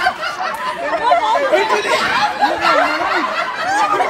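A group of people laughing and chattering at once, many voices overlapping with bursts of giggling.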